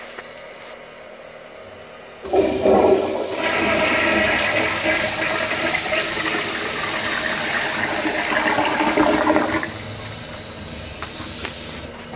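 An American Standard Madera toilet flushing through its flushometer valve. A sudden rush of water starts about two seconds in and stays loud for about seven seconds, then drops to quieter running water near the end.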